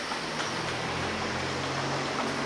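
Street ambience: a steady wash of noise with the low hum of a motor vehicle's engine, which grows stronger about a second in.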